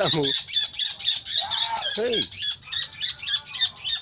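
A fish-eating bird caught in a pond's protective net squawking in distress: rapid, even, high-pitched calls, about five or six a second.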